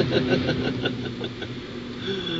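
A man chuckling softly in quick pulses that die away about halfway through, over a steady low hum.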